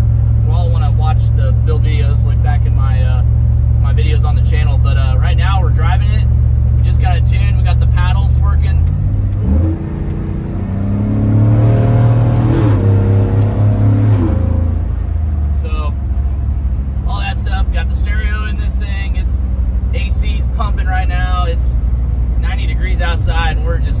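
Cabin sound of a 1993 Chevy truck's supercharged GM LT5 crate V8 cruising on the highway with a steady low drone. About ten seconds in the revs climb for some four seconds under acceleration, with a faint high whine rising along with them, then drop back to cruise.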